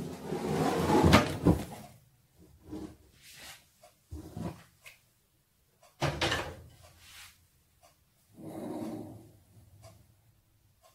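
A stainless steel pot of water being handled and set down on a gas stove's grate: a short clattering stretch with knocks at first, then a handful of separate metal knocks and clanks a second or two apart, the sharpest about six seconds in.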